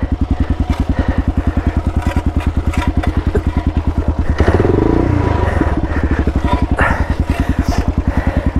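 Kawasaki KLR650's single-cylinder four-stroke engine idling with a fast, even thump, rising in a brief burst of revs about four and a half seconds in as the rider tries to free the bike from the rock it is hung up on. There are a few light knocks.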